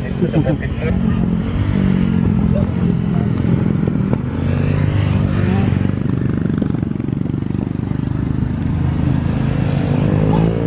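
A small engine running close by, a loud steady low drone that lasts the whole time.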